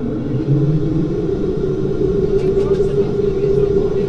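Saab 340B turboprop engine starting up, heard from inside the cabin: a steady hum over a low rumble that grows a little stronger after a second or so.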